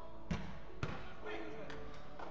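Two sharp thumps of a football being struck on the indoor pitch, about half a second apart, with players' voices.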